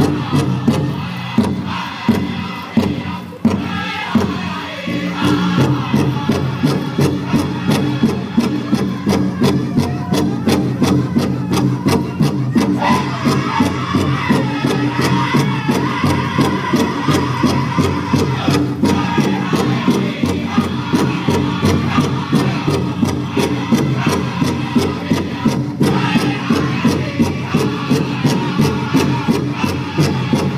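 A powwow drum group singing a Women's Fancy Shawl song: several voices chanting over a steady, even beat on a large shared drum.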